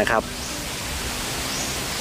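A steady outdoor background hiss with no distinct events, strongest in the upper range, swelling slightly about one and a half seconds in.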